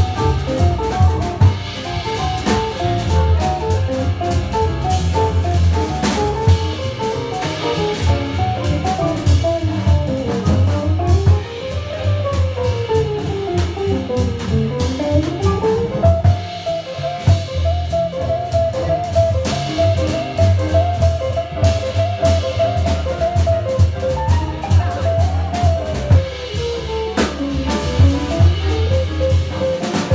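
Live jazz quartet of guitar, piano, double bass and drum kit playing. The lead line weaves through fast runs up and down, then holds one long note for several seconds over the bass and drums.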